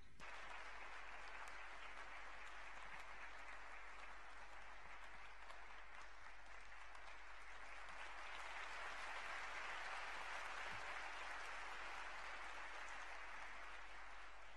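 A large hall audience applauding steadily in welcome, faint and even, swelling slightly a little after the middle.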